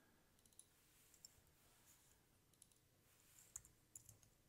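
Near silence with a few faint, scattered clicks of a computer keyboard and mouse, the most distinct near the end.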